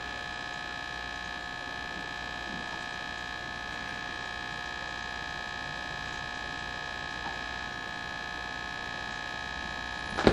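A steady electrical hum with a high whine over it, holding the same pitches throughout.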